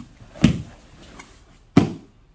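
Two thumps of a grappler's body landing on a foam grappling mat, a little over a second apart.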